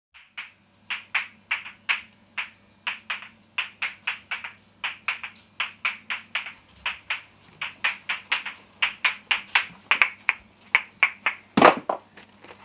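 Sharp clap-like percussion hits, about three to four a second in an uneven, syncopated rhythm, played back from a vinyl record on a turntable, over a steady low electrical hum. The loudest hit comes near the end.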